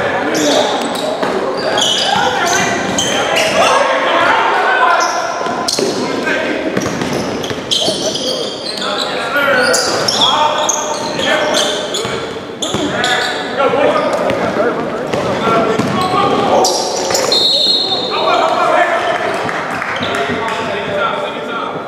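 Indoor basketball game: a basketball bouncing on the hardwood court and players calling out, echoing in a large, mostly empty gym. A short high whistle sounds near the end as play stops.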